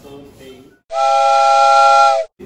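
Steam whistle sound effect: a loud chord of several pitches held steady over a hiss. It starts abruptly about a second in and lasts about a second and a half, then cuts off.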